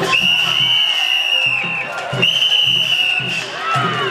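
A whistle blown in two long, steady blasts, the first right at the start and the second about two seconds in. Drum-driven ring music and crowd noise continue underneath.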